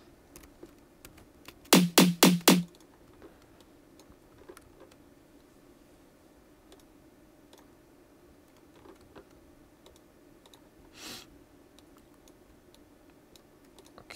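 A snare drum sample triggered from the Kontakt sampler, struck four times in quick succession about two seconds in. After that, only faint scattered clicks of a computer keyboard and mouse as notes are entered.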